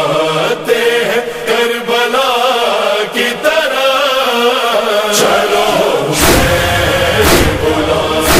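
Urdu noha, a Shia lament, chanted by a male reciter over a sustained choral backing. About six seconds in, deep thumps begin, roughly one a second, the beat of matam (chest-beating) that marks the lament's rhythm.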